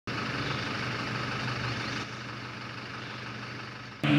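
Off-road 4x4's engine idling with a steady low hum, dropping a little in level about halfway through.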